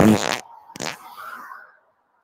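Cartoon fart sound effect played twice: a loud low buzzy blast at the start, then a shorter one just under a second in.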